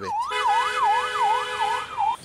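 Electronic police-vehicle siren in a fast yelp, its pitch rising and falling about three times a second, with a steady lower tone sounding alongside for most of it.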